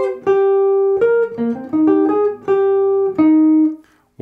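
Archtop jazz guitar playing a single-note bebop line over an E-flat 6 chord. The phrase mixes short swung eighth notes with a few held notes and stops near the end.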